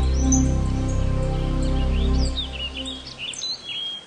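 Birds chirping with quick rising and falling calls over a sustained, slow music bed. The music drops away a little over two seconds in, leaving the chirps alone until they fade out.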